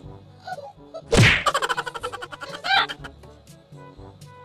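A sudden loud whack about a second in, followed by a quick rattle of clicks and a short wavering tone, over light background music.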